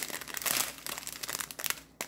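Small clear plastic bags of diamond-painting drills crinkling and crackling as they are handled and shifted on the table. The sound is busiest in the first second and dies away near the end.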